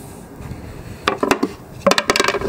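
Plywood speaker rings knocking and clacking against each other and the plywood box as they are handled: a quick cluster of wooden knocks about a second in and a few more near the end.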